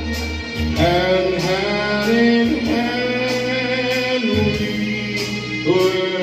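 Men singing a slow song into microphones over amplified instrumental backing, holding long notes.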